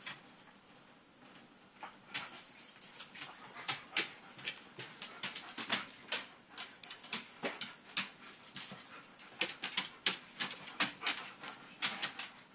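Corgi puppy playing: a rapid, irregular series of small clicks and taps, several a second, starting about two seconds in.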